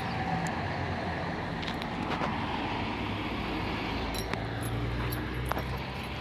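Diesel engine of a Mercedes-Benz Citaro articulated city bus running at low revs, a steady low drone that grows a little louder in the second half, with a few light clicks.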